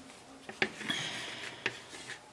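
A wooden craft stick working the edge of a paint-covered canvas: a sharp click, a short scrape, then another click.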